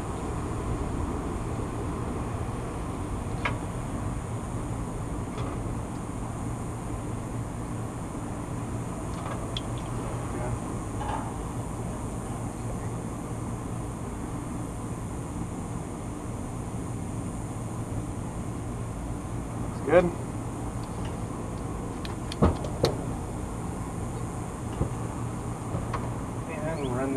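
Steady low machine hum, with a few sharp clicks from pliers and other hand tools working on electrical wire. The loudest clicks come about twenty seconds in and twice more shortly after.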